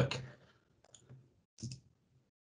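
A few faint clicks over a call line after a man's voice trails off, with one short soft burst near the end.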